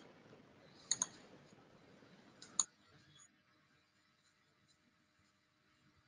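Two short, sharp clicks, about one second and two and a half seconds in, over faint background hiss. The hiss cuts off just after the second click, leaving near silence.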